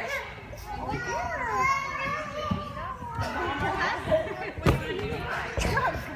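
Young children's voices and chatter in a large gymnastics hall, with a couple of thuds in the second half.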